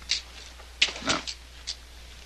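A man's quiet breath, then a single soft spoken "No" with small mouth clicks, over a steady low hum.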